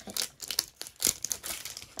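Crinkly plastic wrapping being handled in quick irregular crackles, with one sharper crackle about a second in.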